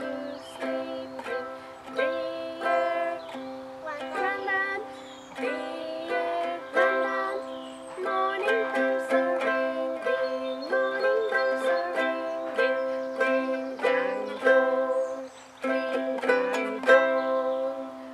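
Two ukuleles strummed together, playing chords in a steady beat of about two strums a second.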